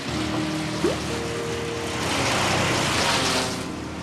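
Music with held tones over a wood chipper shredding branches. A dense rush of noise builds about halfway through and eases off near the end.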